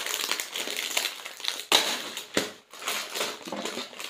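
Plastic snack packets crinkling and crackling as they are handled, with a louder crackle a little under two seconds in.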